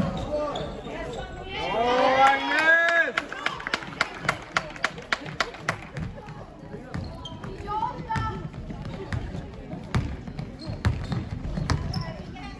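A basketball being dribbled on a sports-hall floor: a quick, even run of bounces, about three to four a second, following a loud shout about two seconds in. Scattered bounces and brief calls from the court carry on afterwards.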